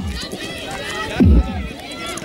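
Low booming drum beats keeping Jugger match time, one beat per 'stone' about every second and a half, one falling about a second in, under players' voices calling across the field.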